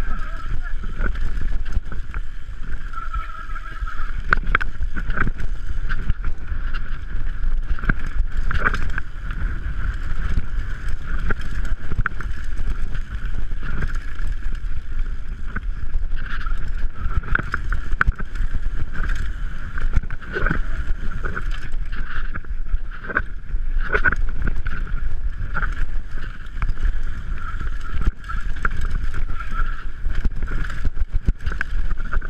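Wind buffeting the camera microphone over the rattle and clatter of an Orange 5 full-suspension mountain bike running fast down a rocky dirt trail, with frequent sharp knocks as the wheels hit stones and ruts.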